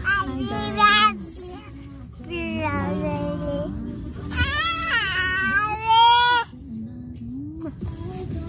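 A woman and a toddler singing along to music, in long drawn-out phrases; the loudest is a high held note about two seconds long in the middle, after which only the quieter music remains.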